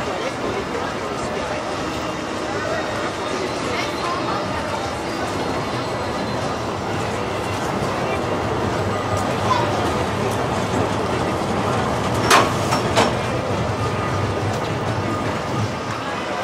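Big Thunder Mountain mine-train roller coaster running on its track with a low rumble, under people's voices. Two sharp clacks come about twelve and thirteen seconds in.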